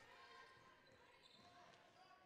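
Near silence: faint court sound of a basketball game in a gym, with a ball being dribbled.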